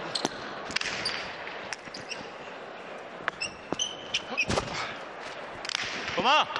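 Jai alai pelota striking the fronton's walls and floor during a rally: sharp knocks at irregular intervals, the loudest about four and a half seconds in.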